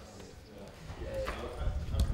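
Footsteps on a hard floor with a brief, faint voice about a second in, and a low rumble that builds over the second half.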